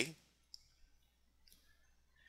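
Two faint computer mouse clicks about a second apart against near silence, the clicks that start the playback.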